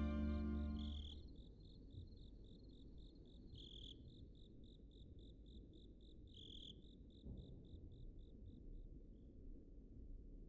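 Background music fades out about a second in. A single cricket then chirps steadily in a high, even rhythm of about three chirps a second, over a faint low ambient rumble, and stops about a second before the end.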